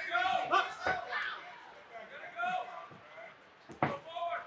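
Voices calling out in the arena, with two sharp smacks of boxing gloves landing punches, one about a second in and a louder one near the end.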